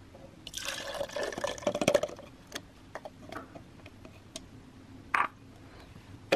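Soaked soap nuts and their sudsy soaking water poured from a glass bowl into a plastic blender jar: a splashing pour of about a second and a half. A few light knocks follow.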